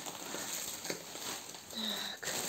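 Faint rustling of a toilet-paper pack's plastic packaging being handled, with a few light crackles. A short hum of a voice comes near the end.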